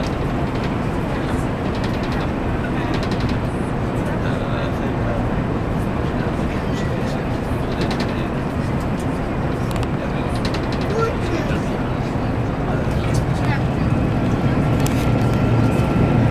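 Steady rumble and rush of a passenger train running at speed, heard from inside the carriage, with a strong low hum; it grows a little louder near the end.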